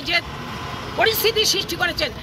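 A woman speaking. There is a pause of under a second near the start, in which a steady outdoor background noise is heard.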